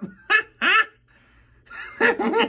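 A man's high-pitched falsetto cackle: two short squeals about half a second apart, a pause, then a faint breath near the end as the laugh builds. It is a put-on Joker-style laugh that he says still needs work.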